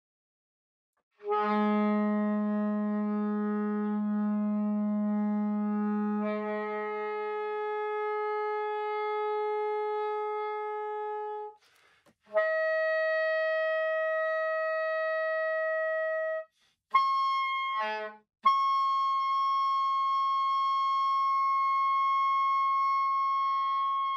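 Soprano saxophone climbing the overtone series on the low B-flat fingering. A long low note loses its fundamental about five seconds in and goes on as the octave above. After a short breath comes a higher partial, then a brief sputtering, unstable attempt, and finally a long, steady high note.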